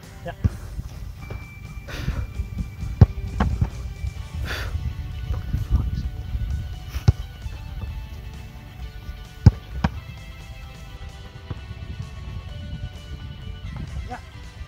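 A football being kicked and struck during shooting practice: a few sharp thumps, the loudest about three, seven and nine and a half seconds in, over wind rumble on the microphone.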